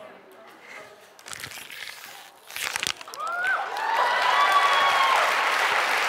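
Thin plastic water bottle crinkling as it is squeezed empty, then a studio audience cheering and whooping, swelling from about three seconds in and holding loud.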